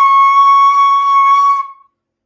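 C# bansuri (bamboo flute) holding one steady high note, the upper Sa, for about a second and a half before it fades out.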